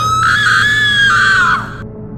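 One long, high-pitched human scream, held for nearly two seconds and dipping in pitch just before it cuts off, over steady dark ambient music.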